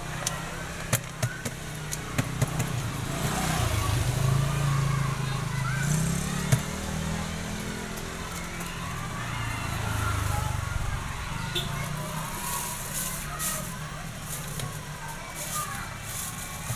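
Street traffic: a motor vehicle's engine running close by, louder for a few seconds about three seconds in and again around ten seconds, with a few sharp knocks and background voices.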